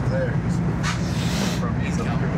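Steady low hum inside a Metro rail car, with a brief hiss about a second in.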